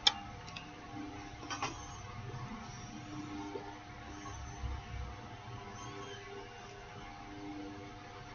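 Quiet pipe smoking: a short click as the tobacco pipe's stem goes to the mouth, then faint ticks and soft puffs on the pipe over a steady low room hum.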